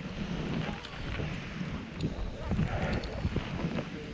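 Wind buffeting the microphone of a camera carried by a moving skier, a loud uneven rush that swells and dips, over the hiss of skis sliding through fresh powder.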